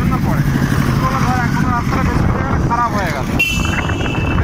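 Motorcycle engine running with road and wind rush while riding, with voices over it. A short, high, steady beep like a horn starts near the end.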